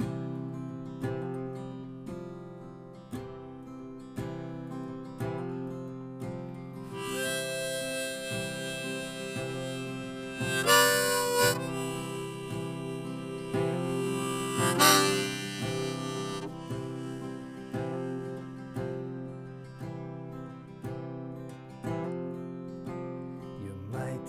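Acoustic guitar strummed about once a second, with a harmonica on a neck rack playing a melody over it from about a quarter of the way in. The harmonica is loudest on two high phrases near the middle, then drops out, leaving the guitar alone near the end.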